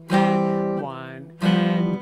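Guild X-170 archtop guitar: two chords strummed about a second and a third apart, each ringing and fading before the second is cut short.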